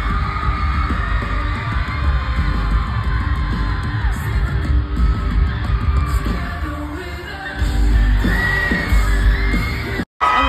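Live band playing loud pop-rock with heavy bass in an arena, with singing and the crowd yelling along, recorded on a phone. The music swells louder near the end.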